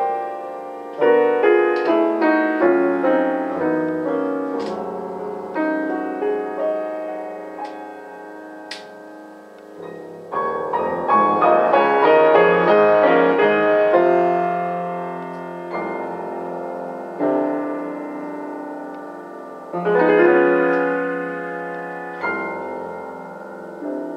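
A freshly tuned Pleyel piano played solo, phrases of struck notes and chords swelling and dying away. It grows quieter before the middle, then comes back fuller about halfway through, with another loud phrase near the end.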